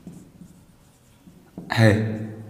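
Faint strokes of a marker pen writing on a whiteboard.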